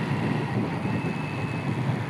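Hero Splendor motorcycle riding along a road: steady single-cylinder four-stroke engine and road noise heard from the handlebar-mounted phone.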